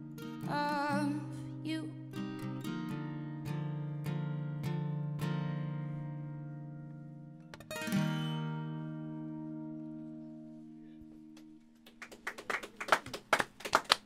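Acoustic guitar ending a song: a short sung phrase at the start, then picked notes and a final chord at about eight seconds that rings and slowly fades away. Clapping starts about two seconds before the end.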